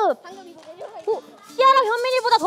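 Children's voices: a high held note slides down and breaks off at the very start, followed by soft chatter. About a second and a half in, loud, high-pitched children's shouting breaks out.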